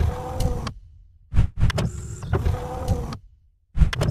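Animated logo-intro sound effect: a mechanical sliding whoosh with a low rumble, each pass about two seconds long, starting abruptly and fading away, repeated as the animated blocks move.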